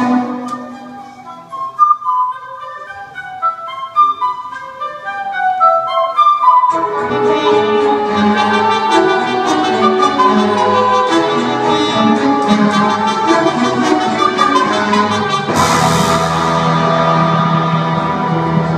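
Rock band and orchestra playing live. A sparse line of single notes runs for about the first six seconds, then the full band and orchestra come in together, with a crash and a held low chord a few seconds before the end.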